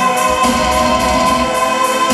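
Symphonic black metal band playing live, loud: electric guitars and drums under long held choir-like chords.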